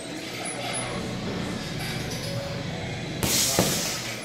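Steady background noise, then near the end a short hiss and a thud as a punch lands on a hanging heavy bag.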